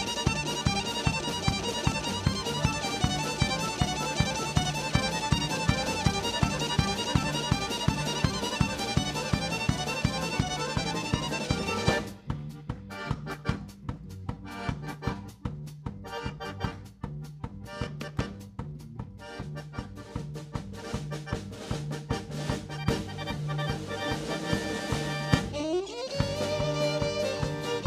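Live Balkan folk ensemble of two accordions, violin, double bass and drum kit playing a dance tune with a steady beat of about two strokes a second. About halfway through, the upper instruments drop out, leaving a quieter, sparse low accompaniment that keeps the beat, until a rising slide near the end brings the full band back in.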